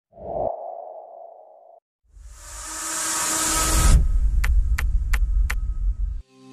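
Logo-intro sound effects: a short humming tone with a thump at its start, then a whoosh with a deep rumble swelling over about two seconds, followed by four sharp ticks roughly a third of a second apart over the continuing rumble.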